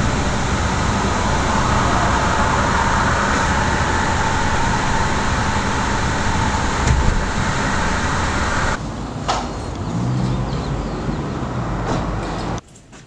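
A car driving, with steady road and engine noise heard from inside the cabin. About nine seconds in, the high hiss drops away and a lower hum remains.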